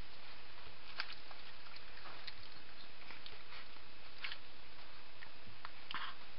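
Weimaraner puppies moving about: scattered light clicks and taps, roughly one a second, over a steady hiss.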